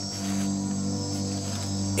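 Night-time rainforest insect chorus, crickets trilling steadily in a high, unbroken buzz, over a low, steady background music drone.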